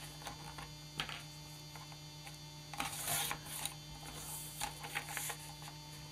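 Sliding paper trimmer cutting a brown paper envelope: the blade carriage scrapes along the rail in two strokes, about three seconds in and again about four and a half seconds in, after a few light clicks of the paper being set in place. A steady mains hum runs underneath.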